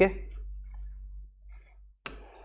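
A pen tip tapping and scratching faintly on a writing screen as a word is written, a few small clicks over a low steady hum.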